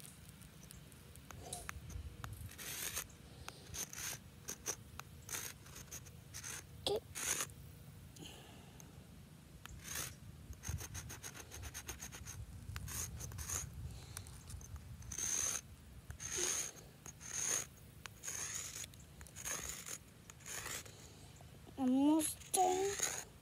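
A stick of sidewalk chalk scraping over concrete pavement in many short, irregular strokes as letters are written.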